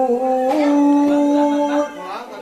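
Solo voice singing an Arabic sholawat through a PA sound system in long held notes, without drums. The note steps up about half a second in, is held, and breaks off near the end.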